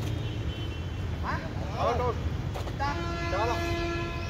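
Sharp racket hits on a badminton shuttlecock over a steady low traffic rumble. A vehicle horn sounds for about a second near the end.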